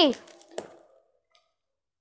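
The end of a child's shout, then one faint click from a small pair of scissors working at gift-wrapping paper about half a second later.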